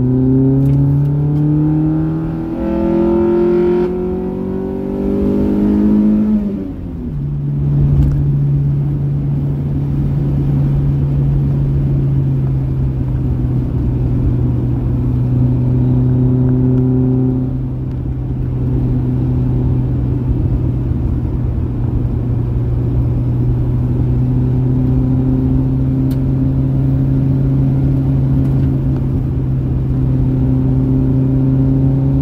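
Honda Prelude's swapped G23 four-cylinder engine heard from inside the cabin, pulling up through the gears: its pitch climbs, drops at a shift about two and a half seconds in, climbs again, and drops at a second upshift about seven seconds in. After that it holds a steady drone at cruising speed over road noise.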